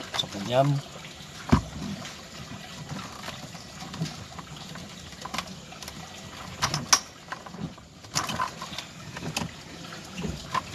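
Plastic dashboard trim of a first-generation Toyota Vios being worked loose by hand: a sharp click about a second and a half in, then scattered lighter clicks and rustles of the panel and its clips.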